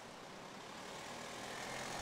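A line of cars driving slowly past on a road, a quiet steady engine and tyre noise that grows a little louder.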